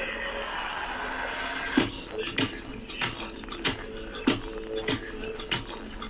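Background music: after a hissing swell, a steady drum beat comes in about two seconds in, with a kick on roughly every 0.6 seconds over a held low tone.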